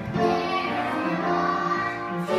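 Children singing a show tune together with music, held notes changing pitch every half second or so.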